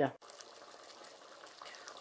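A pot of vegetables in chicken broth and tomato sauce bubbling at a gentle boil, a faint steady bubbling.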